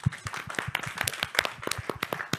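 An audience applauding, with many separate hand claps heard distinctly.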